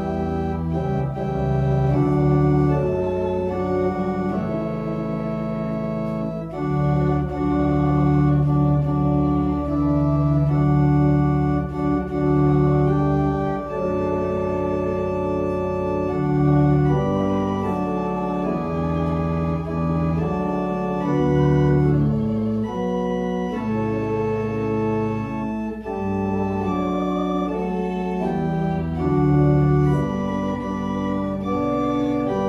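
Church organ playing a hymn in sustained full chords, the harmony changing every second or so.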